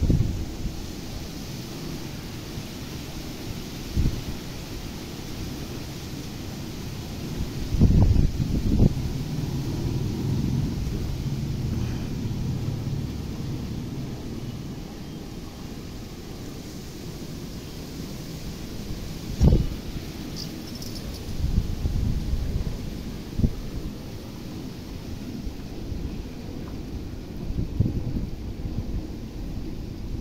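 Wind buffeting the microphone in irregular low gusts, strongest about eight seconds in and again near twenty seconds, over a steady outdoor hiss.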